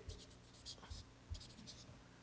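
Marker pen writing Chinese characters on paper: a few faint, short strokes.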